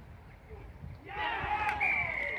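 Rugby players shouting on the pitch from about halfway in, then a referee's whistle blast starting near the end, one steady high note.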